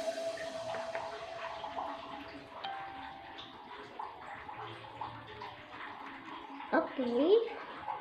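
Faint taps and rustles of a small plastic paint tray and paper being handled, with small scattered ticks over low room noise.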